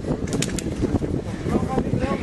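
Outdoor background voices of people talking and calling, with a few quick sharp clicks about half a second in.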